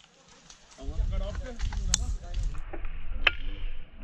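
Two sharp airsoft gun shots, about a second and a half apart, over a low rumble and muffled voices.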